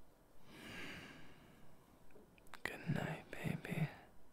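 A man's close-miked mouth sounds at whisper level: a breathy exhale, then a couple of sharp mouth clicks and three short, soft voiced sounds near the end.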